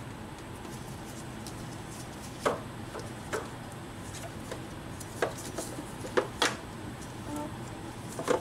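Metal clicks and clunks as a power steering pump is worked by hand into its mounting bracket on the engine: a handful of short sharp knocks, the first about two and a half seconds in and several close together later on, over a steady faint background noise.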